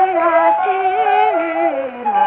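Kunqu opera singing from a 1931 Victor 78 rpm record: a voice holding long notes that step between pitches with small ornamental turns, over accompaniment.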